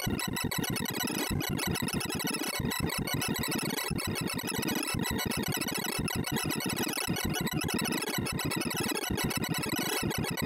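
Sorting-algorithm visualizer's synthesized tones: a dense, steady stream of very short electronic blips, one for each element Silly Sort compares and swaps, their pitch following the values being accessed.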